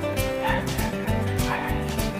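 A Pomeranian giving two short, high yips about a second apart over background acoustic guitar music.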